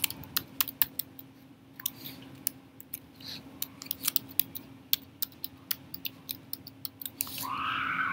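Computer keyboard keystrokes, a few irregular clicks a second, as words are typed into spreadsheet cells, over a faint steady hum. A brief voice-like sound comes near the end.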